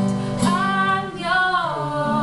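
Teenage girls singing a song in held notes, accompanied by an acoustic guitar.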